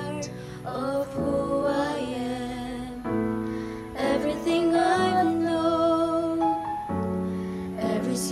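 A mixed group of teenage voices singing a slow song in unison over a soft instrumental accompaniment, holding long notes, one of them for nearly three seconds in the second half.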